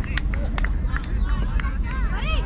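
Distant, unintelligible shouts and chatter from players and people around a youth football pitch, over a steady low rumble of wind on the microphone. A few sharp taps stand out, about one a second.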